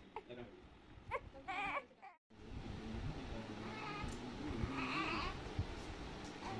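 A baby's short wavering cries with low voices around it. The sound drops out for a moment about two seconds in, then low voices and baby sounds carry on.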